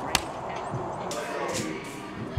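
A single sharp, slap-like crack just after the start.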